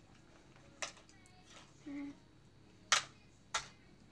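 Three sharp plastic clicks from a handheld game spinner being handled and spun, one early and two close together near the end.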